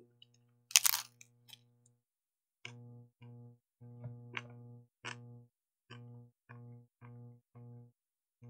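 A single loud crunch about a second in, a bite into a crisp taco shell, over background music in which a plucked guitar strikes the same low note over and over, roughly twice a second.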